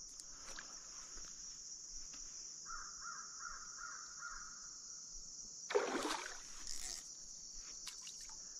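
Steady high-pitched insect buzz at the water's edge, with a bird calling a quick run of about six notes in the middle. About six seconds in comes a short splash as a large bass strikes at a small bluegill hooked on the line.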